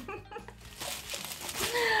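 Faint rustling of a bubble-wrapped package being handled, then a woman's voice, sliding down in pitch, starting about a second and a half in.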